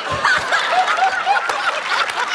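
People laughing, a run of short repeated "ha" sounds.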